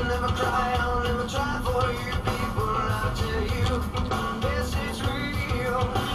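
Rock song with singing and guitar playing on the car radio at a steady level.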